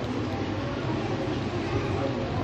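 Steady mechanical drone of ceiling fans and air coolers running: a constant low hum under an even rushing air noise.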